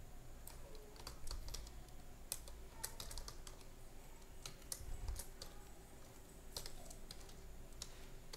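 Computer keyboard typing: faint, irregular keystrokes as a line of code is entered.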